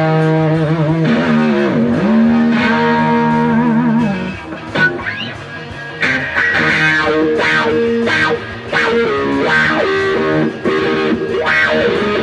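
1964 Fender Stratocaster electric guitar played through a Fender valve amp with effects pedals, jamming a lead line. It starts with long held, bent notes with wide vibrato, goes quieter about four seconds in, then plays quicker phrases from about six seconds on.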